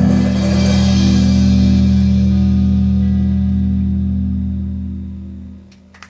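A rock band's final chord ringing out: electric guitar and keyboard hold one chord over a drum-kit cymbal wash, and the sound slowly fades until it dies away near the end.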